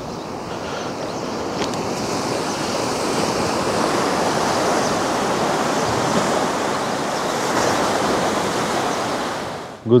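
Sea waves washing against a rocky shoreline, a steady rush that swells over the first few seconds.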